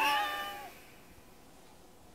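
A kitten's single meow, rising and then falling in pitch, lasting under a second.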